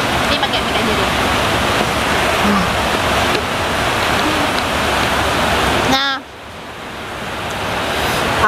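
Heavy rain falling, a loud steady hiss. It drops off abruptly about six seconds in and comes back quieter, building again toward the end.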